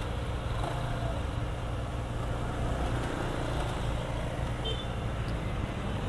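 Sport motorcycle engine idling with a steady low hum while the bike is stopped.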